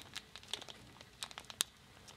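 Clear plastic bag of moist potting mix crinkling faintly in the hands, a scatter of small sharp crackles, as a syringe is pushed into a hole in the bag.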